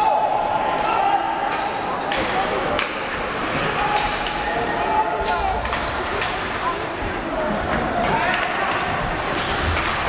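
Voices carrying through an ice hockey arena, with a few sharp clacks of sticks and puck on the ice and boards.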